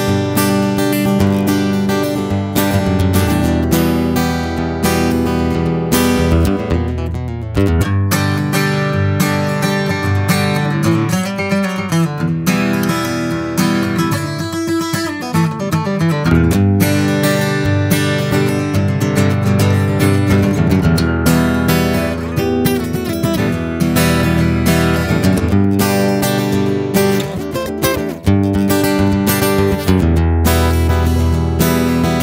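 AMI SD-180E all-solid-wood dreadnought acoustic guitar played continuously, first heard through its built-in piezo pickup, then through a condenser microphone and an X/Y recorder microphone from about halfway through, and back to the piezo pickup near the end.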